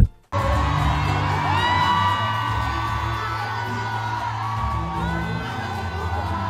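Live concert music with long held, gliding sung notes over a steady bass line, with the crowd whooping and cheering. It starts after a short break just after the start.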